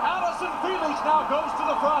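A man's race commentary playing from a television speaker.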